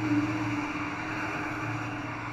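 Soft background music holding a sustained low chord and slowly fading, over faint street traffic noise.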